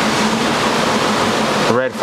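Steady rushing water noise from a fish store's plumbed aquarium filtration, loud and even throughout, with a voice coming in near the end.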